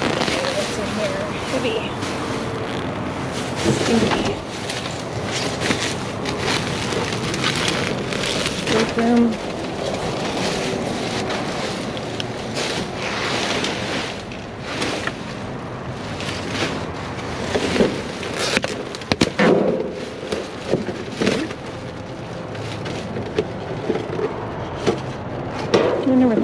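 Plastic trash bags, bubble wrap and cardboard boxes being rummaged through by hand in a metal dumpster: continuous crinkling and rustling with occasional louder crackles.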